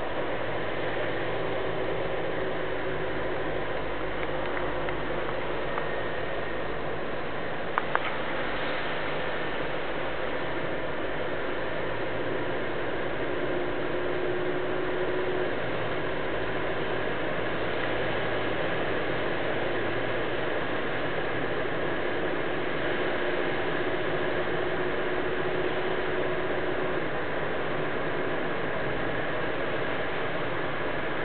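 Steady in-cabin road noise of a car driving on wet pavement: tyre hiss with a low engine hum underneath. Two sharp clicks close together about eight seconds in.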